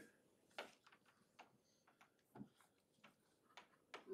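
Near silence broken by about half a dozen faint, irregular ticks of a stylus tapping and writing on a tablet screen.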